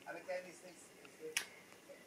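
A single sharp click about one and a half seconds in, over quiet, murmured speech.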